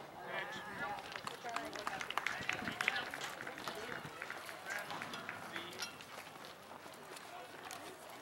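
Baseball spectators and players calling out and cheering with scattered sharp claps as the ball is put in play off a hit, the noise thinning out over the last few seconds.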